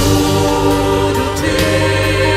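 Mixed church choir singing a Russian worship song, holding long, steady chords that shift partway through.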